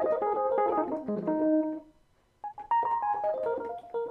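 A piano-like keyboard sound played in quick falling runs from MIDI controller keybeds, with the clack of the keys faintly heard under the notes. The first run stops just before two seconds in, and after a short silence a second run starts on the other controller.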